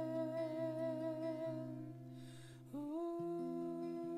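A man humming a long held note with slight vibrato over acoustic guitar picking single low notes; a little past halfway he takes a breath, then slides up into a new held note.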